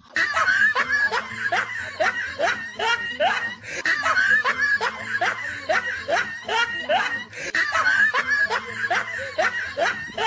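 Continuous laughter: many quick, rising chuckles one after another, starting suddenly and running on without a break.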